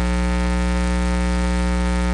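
Steady electrical mains hum, a buzz with many overtones, coming through the sound system or recording chain and holding at an even level throughout.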